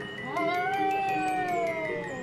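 A cat's long drawn-out meow, rising then slowly falling in pitch, over background music.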